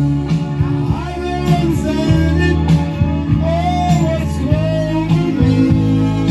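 A man singing into a microphone over recorded backing music with guitar, holding long notes.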